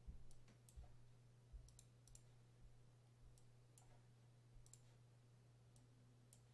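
Near silence broken by about ten faint, scattered computer mouse clicks, over a steady low hum.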